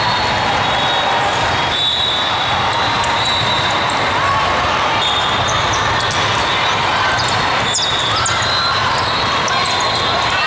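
Steady hubbub of a large hall full of volleyball play: crowd chatter, balls being hit and athletic shoes squeaking on the court floors. There is a cluster of sharp squeaks and a hit about eight seconds in.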